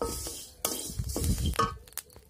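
Wooden spatula stirring dry grains in a dry iron kadai while they roast: the grains rattle and scrape against the metal in two passes, the second one longer.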